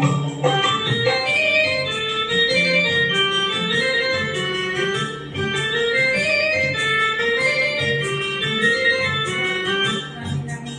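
Instrumental interlude of a karaoke backing track for an old Hindi film song: an electronic keyboard melody rising and falling in short repeated phrases over a bass accompaniment.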